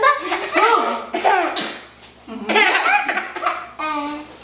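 A baby laughing hard in two bouts, the second starting a little over two seconds in.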